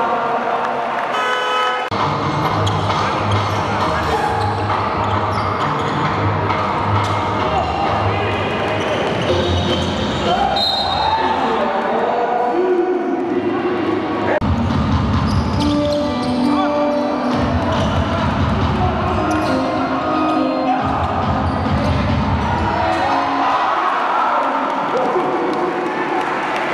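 Basketball game sound: a ball bouncing on the court, with music and voices going on throughout.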